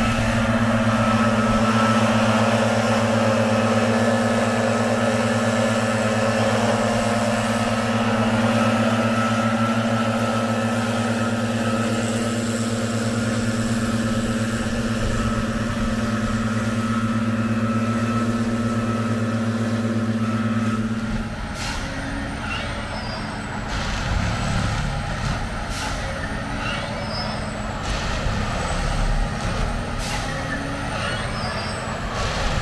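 Heavy diesel engine of track-maintenance machinery running at a steady pitch. It cuts off abruptly about two-thirds of the way through and gives way to rougher, uneven machine noise with occasional knocks.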